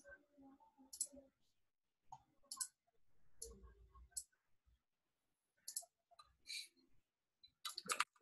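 Faint, scattered computer mouse clicks, about eight short clicks at irregular intervals, with near silence between.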